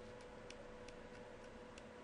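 Near silence: a faint steady hum with light, irregularly spaced ticks of a stylus on a pen tablet as handwriting is written.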